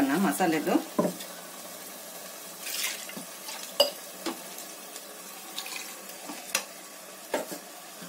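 Kitchen utensils clicking and knocking against a cooking pot while masala paste is added to rice. About six sharp, separate clicks come over a faint steady hiss, the loudest a little under four seconds in.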